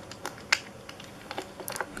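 Small clicks and taps of a die-cast toy car being handled and turned over in the fingers: a few scattered clicks, then a quicker run of them near the end.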